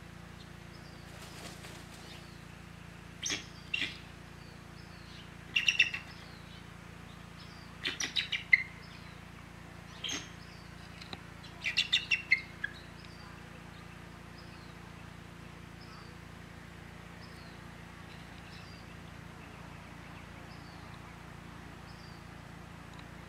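Bald eagle calling: short groups of high, piping, chattering notes between about three and thirteen seconds in, the longest and loudest run about twelve seconds in.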